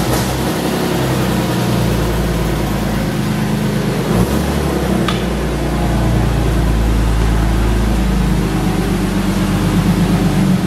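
BMW E36 engine running steadily just after starting on jump batteries, its low drone shifting slightly in pitch a few times. A short click about five seconds in.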